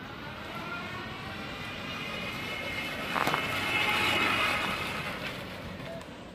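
Electric motorcycle's brushless DC (BLDC) motor whining as the bike approaches and passes close. The whine grows louder to a peak about four seconds in, then fades. There is a sharp click a little after three seconds.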